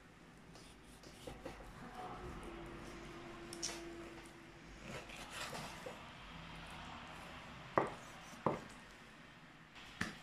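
Faint sounds of a large kitchen knife slicing raw pork on a wooden cutting board, with two sharp knocks near the end.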